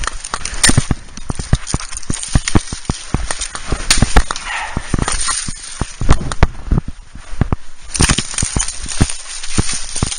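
Fiskars brush axe chopping through willow stems, a rapid, irregular run of sharp knocks and snaps of cut brush.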